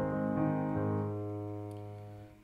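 Piano, left hand playing a descending A-flat arpeggio (A♭, E♭, then a low A♭): the resolution from an E-flat seventh chord back to A-flat. The last, low note comes about a second in and is held, ringing and slowly fading.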